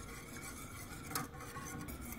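Wire whisk stirring a hot chocolate milk mixture in a stainless steel saucepan to dissolve added gelatin, a faint, even swishing and scraping, with one light tap about a second in.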